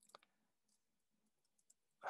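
Near silence with a few faint computer keyboard key clicks as a short line of code is typed.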